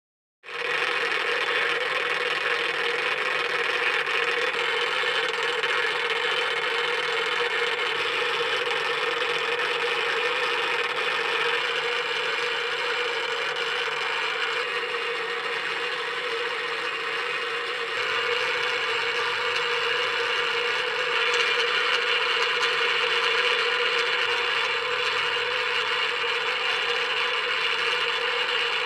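Magnetic stir bar rattling and grinding steadily in a reaction flask, the strange noise it makes as solid forms and thickens the mixture. The noise runs unbroken and brightens slightly about two-thirds of the way through.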